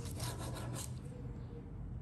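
Serrated bread knife sawing through a sponge cake roll with a cracked, sugar-dusted crust: several quick rasping back-and-forth strokes in the first second, then fainter.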